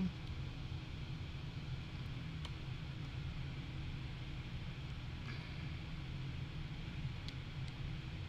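Steady low background hum of room tone, with a few faint clicks.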